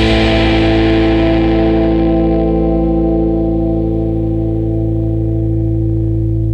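The song's closing chord, struck once on an electric guitar and left ringing, held steady while its brightness slowly fades.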